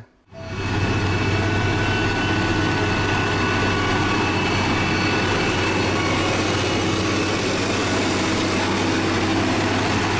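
Motor grader's diesel engine running steadily under working load, a deep even hum with a faint whine above it. It comes in just under a second in.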